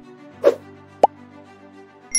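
Logo-intro music: a held chord with a short swish about half a second in and a quick, rising plop about a second in.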